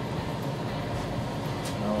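Steady low background hum of room tone, with a faint click near the end as a man starts to speak.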